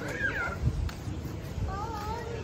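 A young child's high-pitched gliding cries: one just after the start and another near the end.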